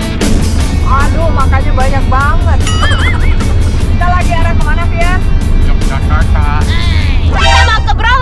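Steady low rumble of a car driving on the highway, heard inside the cabin, under background music with a beat. Wavering, voice-like pitched sounds come in from about a second in.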